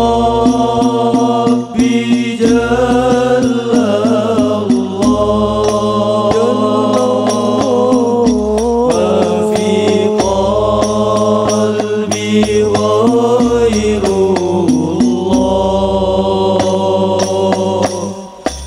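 Male vocal group singing Islamic sholawat in unison, drawing out long held notes with slow melodic ornaments, in the Al-Banjari style. Rebana frame drums strike under the voices throughout.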